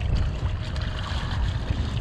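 A hooked red drum thrashing and splashing at the surface beside the boat as it is netted, a noisy spray of water over a steady low rumble of wind on the microphone.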